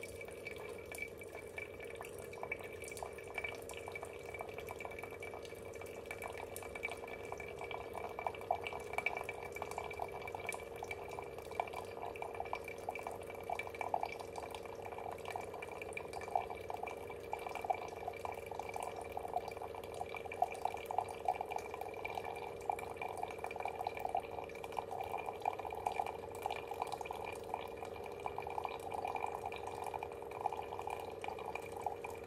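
Keurig K-Duo brewing a single-serve K-cup: a thin stream of coffee pours into a ceramic mug with a dense splashing patter that grows louder about eight seconds in, over a steady hum.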